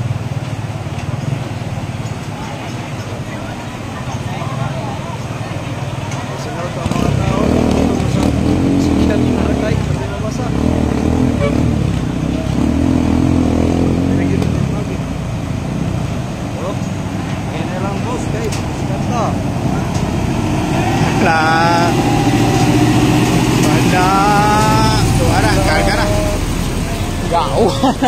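Truck engines running as vehicles drive through deep floodwater, louder from about seven seconds in, over a steady wash of moving water. People's voices call out over it late on, and a truck wheel splashes through the water close by near the end.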